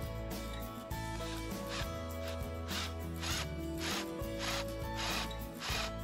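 Cordless drill boring into a wooden board, its bit cutting in short rasping spurts, several a second, from about a second and a half in. Background music with guitar plays throughout.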